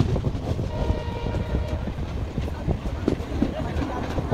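Passenger train running, heard from the coach: a steady rumble of the wheels with frequent knocks and clatter over the rail joints.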